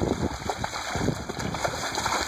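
Water splashing and sloshing in a small inflatable backyard pool as children slide in off a slip-and-slide, a steady rough wash of irregular splashes.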